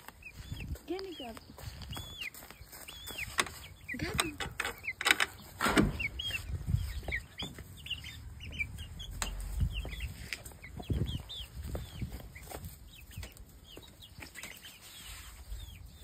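Young hens clucking and chirping as they feed, with short high chirps repeating throughout and scattered light clicks.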